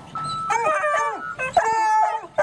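Several bluetick coonhound pups baying together, their drawn-out calls overlapping and rising and falling in pitch.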